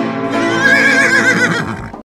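A horse whinnying, one wavering call of about a second and a half, over the closing chords of intro music. Both stop abruptly at the end.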